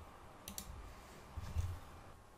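A single computer mouse click about half a second in, closing the simulator window, then a soft low bump about a second later, over quiet room tone.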